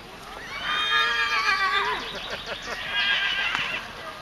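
A horse whinnying: one long, loud whinny starting about half a second in and falling away at its end, followed near the end by a short laugh.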